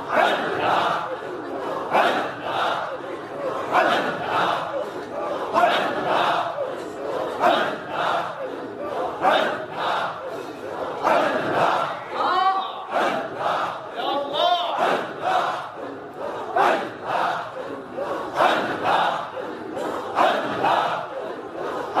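A congregation of men chanting zikr together, a forceful repeated phrase with a strong beat about every two seconds. Near the middle, a single voice rises in wavering cries above the chant.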